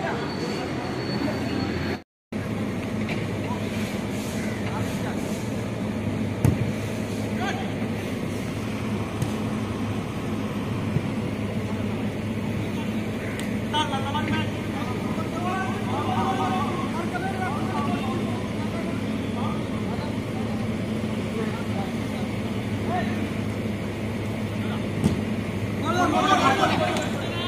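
Outdoor ambience of a football game on artificial turf: a steady background rumble, a few sharp thuds of the ball being kicked (the loudest about six seconds in), and players shouting to each other in the middle stretch.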